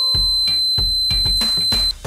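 Homemade door alarm's buzzer sounding one steady, high-pitched tone, set off by the door being opened; it cuts off just before the end. Background music with a beat plays with it.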